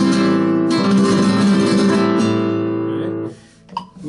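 Flamenco guitar strummed with rasgueado strokes. Full chords ring out, and a fresh strum comes about three-quarters of a second in. The sound is cut short a little after three seconds, leaving only a few light taps.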